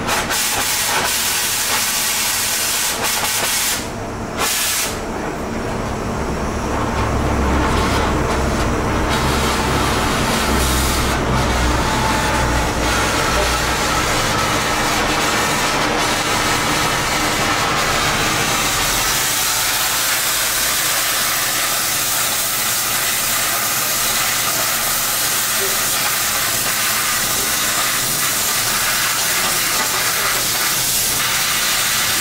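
Oxy-fuel cutting torch flame hissing steadily while the steel plate is heated; about two-thirds of the way through, the hiss turns brighter and higher as the torch begins cutting the steel.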